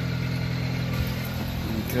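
The Subaru Sambar mini truck's small carbureted engine idling steadily.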